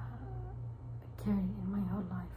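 A woman's voice making a drawn-out hesitation sound, muffled by a face mask, in the second half, over a steady low hum.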